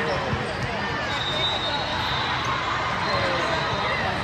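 Busy volleyball-hall ambience: many voices talking across a large reverberant hall, with volleyballs bouncing on the court floor.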